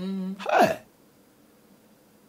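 A man's voice makes a short held hum and then a brief falling exclamation, a wordless interjection lasting under a second.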